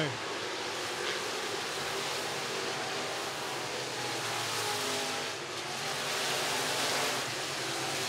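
IMCA Sport Mod dirt-track race cars running at speed past the front stretch, their engines blending into a steady noise that swells a little near the end as cars go by.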